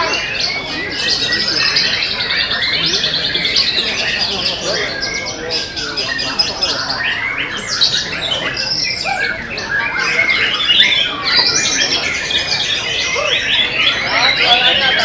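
White-rumped shamas (murai batu) and other caged songbirds singing at once in a contest, a dense, unbroken tangle of loud whistles, rapid trills and chattering phrases.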